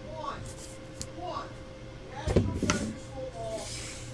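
A pair of plastic dice shaken in cupped hands, clicking, then thrown onto a desk, landing with a knock a little over two seconds in.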